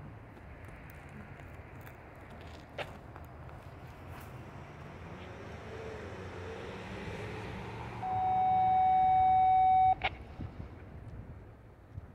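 A loud steady beep on one pitch, held for about two seconds and cut off sharply with a click, over the low rumble of a distant freight train.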